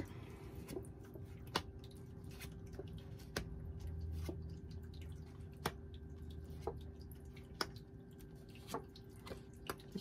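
Round cardstock fortune cards being flipped over and set down on a cloth-covered table: light, short taps and clicks about once a second, over a faint steady hum.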